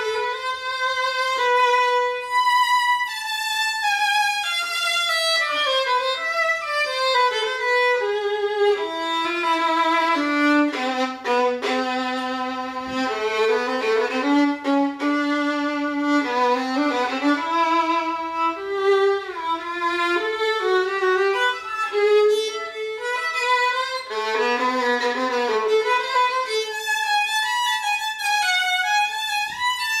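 Old German violin labelled Aegidius Kloz, played solo with the bow: a melody with vibrato that descends to the low strings around the middle and climbs back to the higher register near the end.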